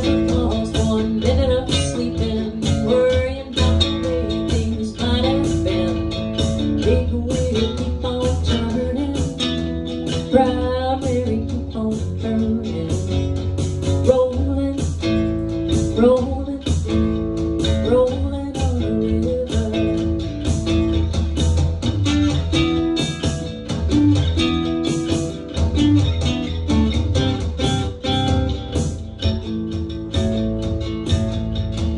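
Live band rehearsal music: an electric guitar playing bluesy lines with bent notes over a steady drum beat and a low bass line.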